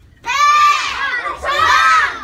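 A group of young taekwondo students shouting together in unison while performing a form: two loud shouts about a second apart.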